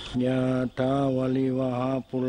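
A Buddhist monk chanting in a low male voice held on one steady pitch, in two long phrases with a brief break under a second in.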